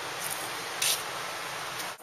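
Steady background hiss, with a brief sharper rustle of higher hiss about a second in.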